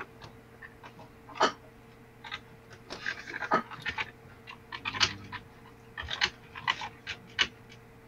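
Irregular soft clicks and crackles over a faint steady hum, picked up by an open microphone on a video call.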